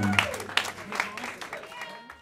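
A small audience clapping in scattered, uneven claps, thinning out and fading down.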